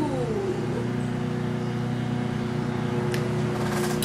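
Lawn mower engine running steadily outside, a constant droning hum. A small click about three seconds in.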